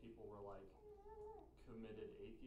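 Faint speech from a person talking away from the microphone, with one vowel held for about half a second near the middle.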